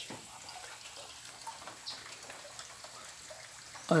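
Light drizzle outdoors: a faint steady hiss of fine rain with scattered small drip ticks.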